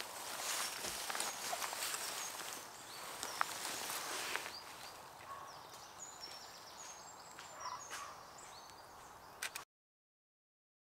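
Outdoor ambience of faint birds chirping, with scattered rustles and small clicks from someone moving in dry leaf litter beside a camera tripod. The sound stops abruptly near the end.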